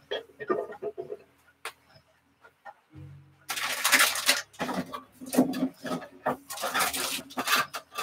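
Scrap paper being gathered and handled: a few light taps and near quiet at first, then a few seconds of continuous rustling and shuffling of sheets in the second half.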